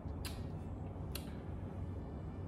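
A person sipping hot coffee from a cup, with two short, faint slurps about a quarter second and just over a second in, over a steady low room hum.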